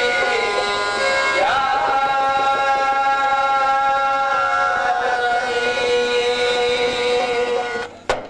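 Qawwali singing: one long held vocal note over harmonium, the pitch sliding up about a second and a half in, holding, then stepping down around five seconds. It breaks off suddenly just at the end.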